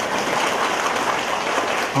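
A congregation applauding, a steady crowd of clapping hands.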